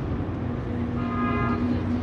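A low steady rumble, joined about a second in by one long, steady horn note held at a flat pitch.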